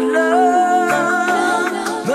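Reggae riddim track with long, held sung notes that slide in pitch and no clear words, a bass line coming in about halfway through.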